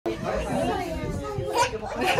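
Several young children and adults talking and exclaiming over one another, with one voice drawn out in a long gliding call about half a second in.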